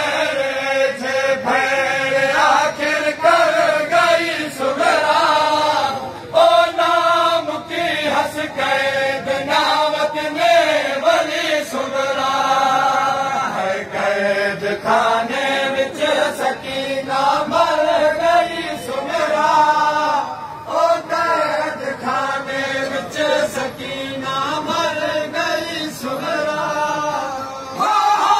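Men chanting a noha, a Shia mourning lament, in phrases that rise and fall with short breaks between them.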